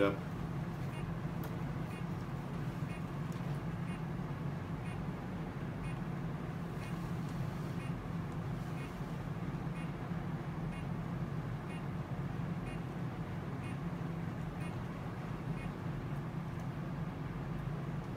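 Steady low hum of the laser and ultrasound equipment during endovenous laser ablation of the vein, with faint, evenly spaced high beeps from the laser console as it fires.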